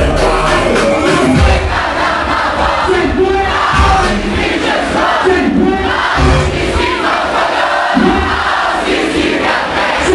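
Loud live hip-hop concert: a club crowd shouting over the music and bass from the PA.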